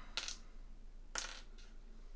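Board game pieces clicking as they are picked out of a plastic compartment tray: two short clatters about a second apart.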